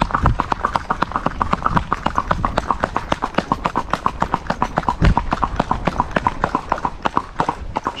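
Hooves of a Paso Fino filly striking asphalt in a fast, even four-beat paso gait, about nine hoofbeats a second, with one heavier thump about five seconds in.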